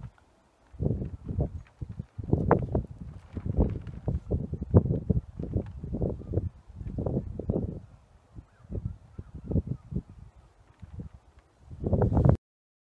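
Footsteps on bare soil and dry grass, heavy thuds with scuffing at about two a second, thinning out over the last few seconds.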